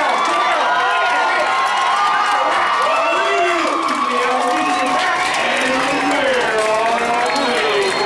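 Crowd of spectators shouting and cheering, many voices overlapping.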